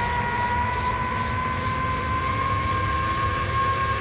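A steady, noisy mechanical drone with a whine that rises slowly in pitch, like a large engine or turbine spooling up.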